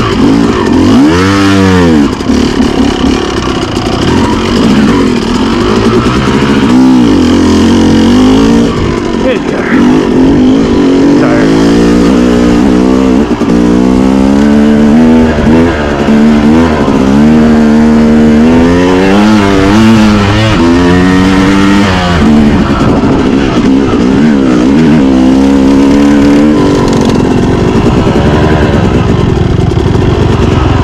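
Yamaha YZ250 two-stroke dirt bike engine being ridden hard, its pitch climbing and dropping every second or two with throttle and gear changes. It settles to a steadier, lower note near the end.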